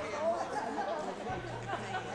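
Many people talking at once: the overlapping chatter of a congregation greeting one another.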